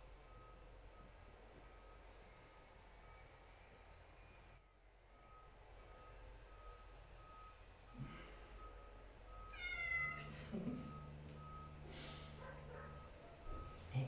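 A house cat meows once, briefly, about ten seconds in, against low room sound.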